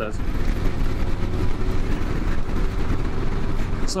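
Harley-Davidson touring motorcycle's V-twin engine running steadily at road speed, under a loud, even rush of wind and road noise on the rider's microphone.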